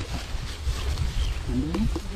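A short, faint human vocal sound near the end, over a low, steady background rumble.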